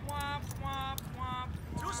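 A person laughing in three drawn-out, high-pitched bursts about half a second apart.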